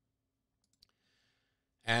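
Near silence with a single faint click a little under a second in, then a man's voice starting right at the end.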